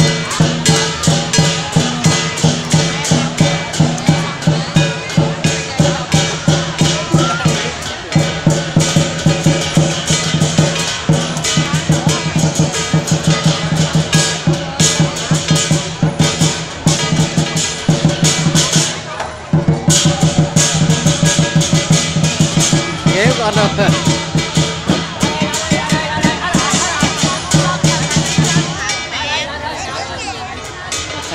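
Lion dance percussion: a big drum beaten in a fast, steady rhythm with clashing cymbals and gong, dropping out briefly about two-thirds of the way through.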